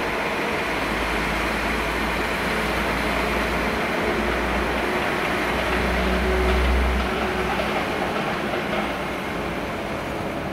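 Transport for Wales diesel multiple unit running past with a steady rumble that swells about six to seven seconds in.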